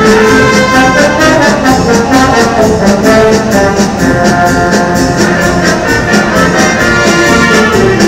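A brass and woodwind concert band with percussion playing a Mexican medley live: held brass and reed notes over a steady drum beat.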